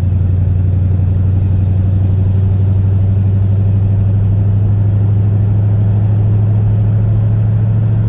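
Ford Torino's engine running steadily, heard from inside the cabin, as the car pulls on light throttle with its C4 automatic transmission held in second gear. The upshift to third is late: a long shift that the crew suspect comes from the vacuum modulator.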